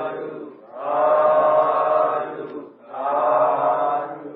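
Buddhist chanting in Pali, sung in long drawn-out phrases on a steady pitch. Each phrase lasts about two seconds, with short breaks between them.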